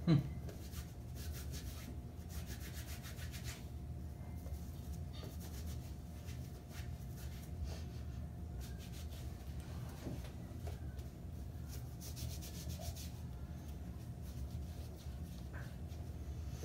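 A pre-moistened gasoline-cleaning wipe rubbed over the hands. The soft scrubbing strokes come in several bursts over a low steady hum.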